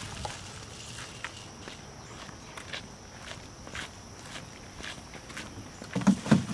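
Footsteps on pavement, short sharp steps about twice a second, over a steady high insect drone.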